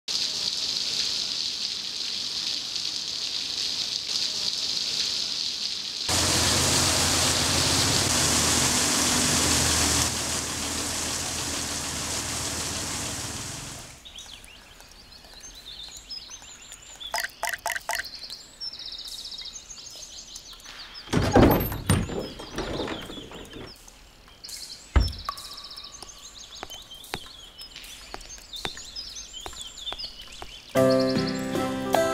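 Rain falling, heavier from about six seconds in and dying away around fourteen seconds; then birds chirping over a quiet background, with a loud rush of noise a little after twenty seconds and a sharp knock about twenty-five seconds in.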